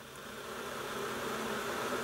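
Electric kettle heating water: a faint buzzing hiss from the element that grows steadily louder.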